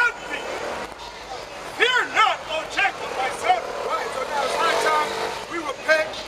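Loud voices calling out on a busy street, their pitch arching up and down, with a motor vehicle's engine passing in the second half, its pitch rising slightly.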